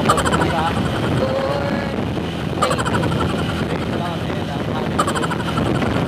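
Steady low rumble of a moving vehicle heard from inside the cabin, with people talking and laughing over it.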